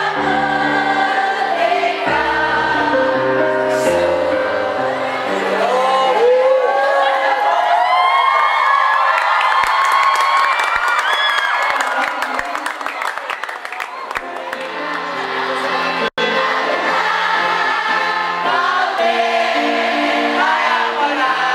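A large group singing a song together over an instrumental accompaniment with a bass line. Partway through, the accompaniment drops away and many voices carry on, loud and uneven like a crowd singing and cheering, before the accompaniment returns in the last few seconds after a brief cut-out.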